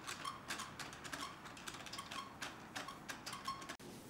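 Light, irregular ticking, two or three sharp ticks a second, some with a brief ring; it cuts off suddenly just before the end.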